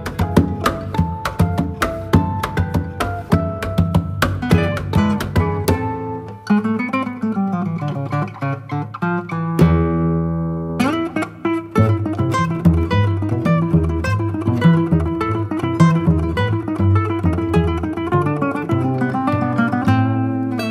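Acoustic plucked-string music on charango and guitar, a quick run of picked notes. About ten seconds in, one piece ends on a ringing chord, and a second later another plucked-string piece begins.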